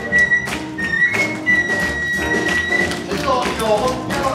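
Flute playing long, high held notes over steady rhythmic handclapping at about three claps a second, with the rest of the band behind. Near the end a voice with wavering pitch comes in.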